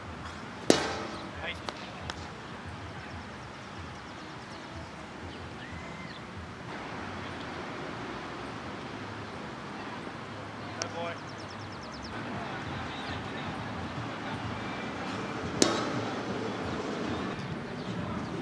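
Two sharp knocks of a plastic wiffle ball being struck, one about a second in and another near the end, over outdoor ambience with faint distant voices.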